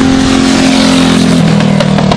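Briggs & Stratton LO206 four-stroke single-cylinder kart engines running at speed as karts pass the finish line, with a steady engine note and a swell as a kart passes close about a second in; one engine note drops away about one and a half seconds in.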